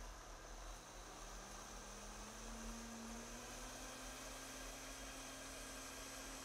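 Professional countertop blender running, puréeing cashews and coconut milk until smooth. Its faint motor note rises in pitch over the first few seconds and then holds steady over a steady hiss.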